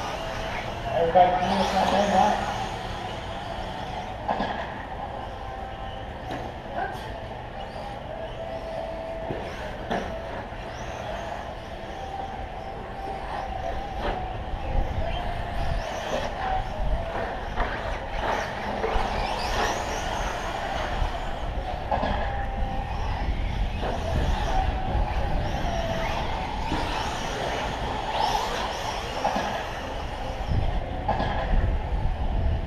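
Radio-controlled short course trucks racing on a dirt track, their motors rising and falling in pitch as they pass, with a low rumble building through the second half.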